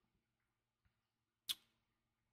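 Near silence: room tone, broken once by a short sharp click about one and a half seconds in.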